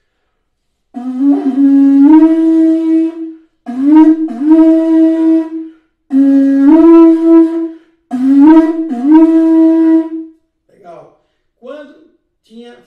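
Conch shell horn blown with buzzing lips in four blasts of about two seconds each, sounded as a danger-warning call. Each blast starts low, scoops up in pitch and then holds one steady note.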